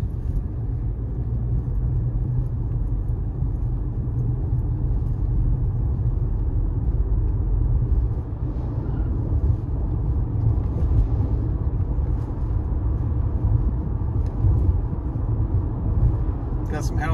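Car driving along a town street: a steady low rumble of engine and road noise.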